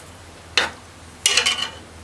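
Metal ladle stirring and knocking against the side of an aluminium pressure-cooker pot of stew: a clink about half a second in, then a longer run of scraping clatter just after a second in, over a low steady hum.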